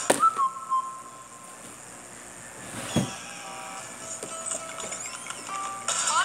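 Television commercial music: a sparse tune of a few short whistled notes, with a sharp thump about three seconds in.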